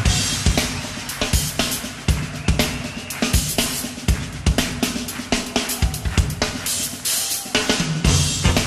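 Live funk band playing: a drum kit drives a busy groove of kick drum, snare and cymbals over a steady low bass line.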